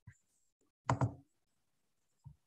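A brief, muffled double knock about a second in, a thump picked up by a meeting participant's computer microphone.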